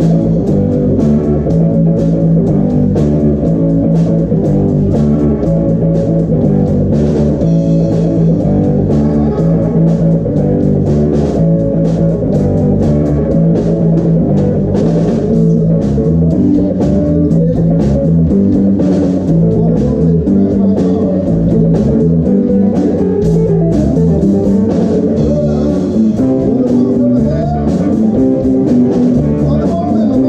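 Live rock band playing at full volume: electric guitar, bass guitar and drum kit, with keyboard, keeping a steady beat through the whole passage.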